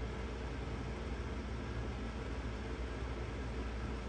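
Steady background hum and hiss of room tone, even throughout with no distinct events.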